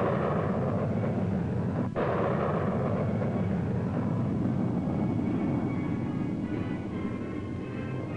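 Roar of a solid-fuel Nike rocket booster launching, a loud steady rushing roar with a brief break about two seconds in. It fades slowly over the last few seconds as music rises beneath it.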